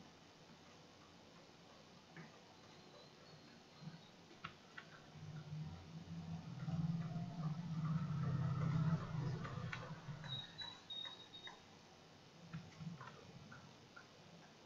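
Scattered single computer-mouse clicks, with a low hum that swells for a few seconds in the middle and fades.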